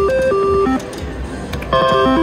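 Slot machine's electronic reel-spin jingle, a run of short stepped beeping notes. It drops away for most of a second near the middle, then starts again as the next spin begins.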